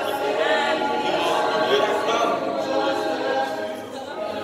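Mixed choir of men's and women's voices singing a cappella in harmony, with no instruments; the sound eases briefly near the end as a phrase closes.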